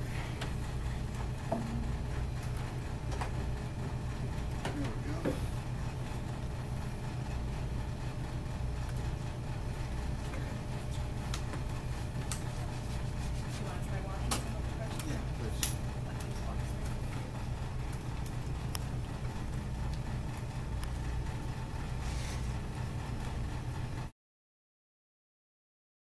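Steady low hum with a few scattered light knocks and taps: crutch tips and footsteps on wooden practice stairs and a hard floor.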